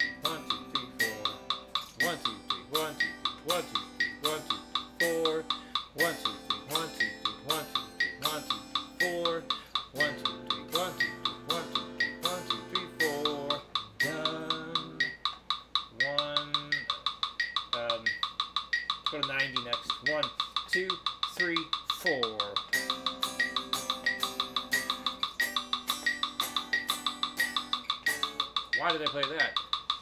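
Electric guitar strumming a progression of seventh chords (Cmaj7, Em7, Dm7, Bm7♭5, back to Cmaj7) in steady repeated strokes, over a metronome clicking at 60 beats per minute.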